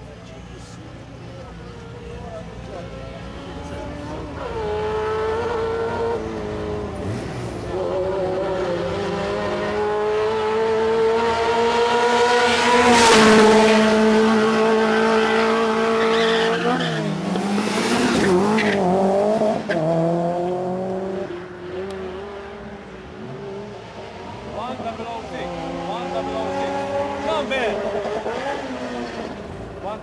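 Subaru Impreza's turbocharged flat-four engine revving on the start line: the revs climb gradually, are held high and loudest around the middle, drop away, then rise again near the end.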